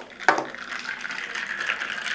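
Handling and movement noise from a person sitting down at a desk with a glass of iced coffee: a short knock about a quarter second in, then steady rustling.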